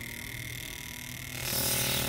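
A fuel injector, its clog cleared by ultrasonic cleaning, spraying carburettor cleaner as a fine, well-atomised mist. The hiss of the spray starts about one and a half seconds in, over a steady high-pitched buzz.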